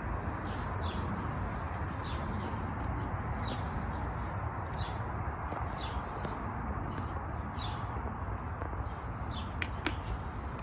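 Small birds chirping repeatedly, short high notes about once a second, over a steady outdoor background hiss. A couple of sharp clicks sound near the end.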